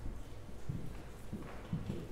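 A few soft, low thuds at irregular spacing over faint room noise, most of them in the second half.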